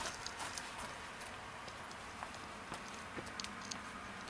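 Faint, scattered footsteps and scuffs on stone patio paving, a tap here and there over a steady background hiss.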